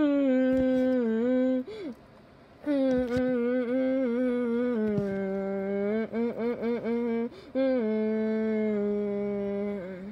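A voice humming a melody without words: long held notes that step up and down, a brief pause about two seconds in, and a quick wavering run of short notes around the middle.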